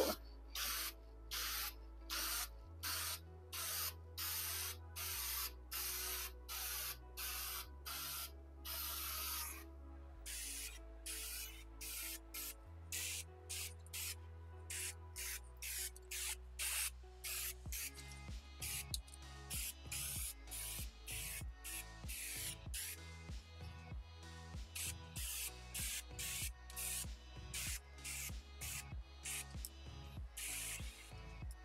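Aerosol spray can of Minwax water-based Polycrylic clear sealant hissing in a long run of short bursts, one or two a second, the bursts getting quicker and shorter in the second half. Background music plays underneath.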